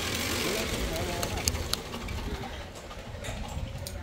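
Wind buffeting the microphone as a steady low rumble, with faint voices in the background and a few sharp clicks about a second and a half in.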